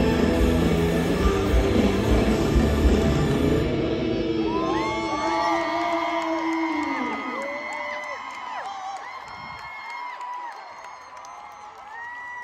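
Live band with electric guitar ending a song, its last chord ringing out and dying away over the first several seconds. As it fades, a large crowd cheers with many high-pitched screams and whoops, growing quieter toward the end.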